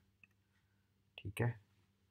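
Faint computer mouse clicks over a low steady hum, with one short louder burst of sound about a second and a quarter in.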